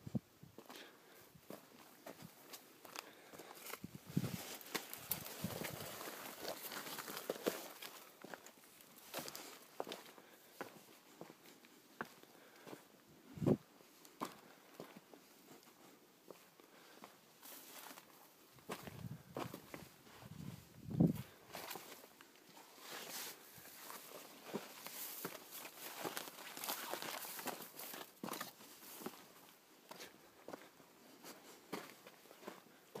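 Footsteps of a person hiking over sandstone, sand and gravel in a dry wash, with scattered crunches and brushing of scrub branches. A few louder knocks stand out, the sharpest about halfway through.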